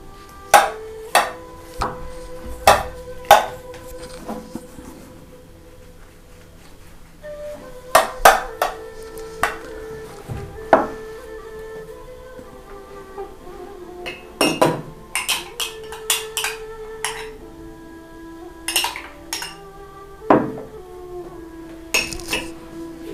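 Sharp clinks and knocks of kitchen dishes and utensils being handled, coming in clusters, over quiet background music with long held notes.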